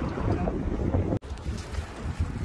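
Wind buffeting the microphone: a steady, uneven low rumble. The sound drops out abruptly for an instant a little over a second in.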